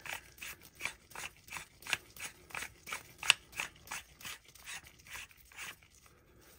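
Metal airgun parts being screwed together by hand: an Edgun Leshiy 2 buttstock tube turned on its threads into the receiver by gloved hands, giving a run of short irregular clicks and scrapes, a few per second, with one sharper click about three seconds in.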